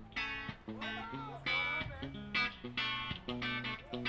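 Live band starting a song: electric guitar chords played in a rhythmic pattern of short strokes over bass guitar notes, with a few sliding guitar notes.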